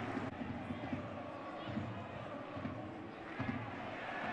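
Football stadium crowd noise: a steady murmur of many voices with low swells, heard as the ambient sound of the match broadcast.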